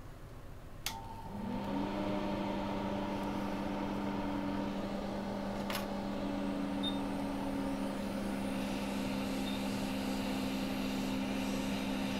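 Hot-air rework station blowing: after a click about a second in, its blower comes up to a steady hum with a few steady tones. It is heating a chip on the logic board to desolder it.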